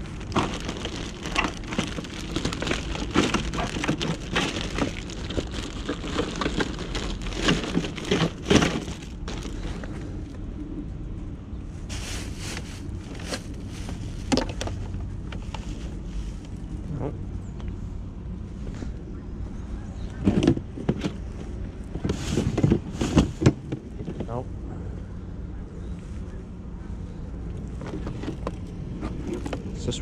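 Plastic trash bags rustling and crinkling, with clatters of plastic items, as gloved hands dig through a curbside trash pile. Bursts of handling noise are busiest in the first third and come again in flurries later, over a steady low rumble.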